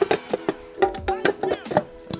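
Sharp knocks and clicks from a plastic CCTV camera housing being handled as its top cover is fitted back on.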